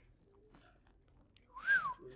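A single short whistled note near the end, rising in pitch and falling back over a breathy hiss.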